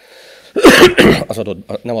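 A man coughs to clear his throat into his hand: a short breath in, then two loud, harsh bursts about half a second in.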